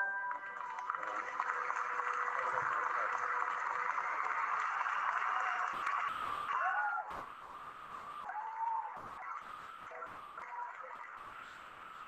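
Audience applauding, heard through a video call's shared audio, with soft music faintly under it at first; the applause dies down about seven seconds in.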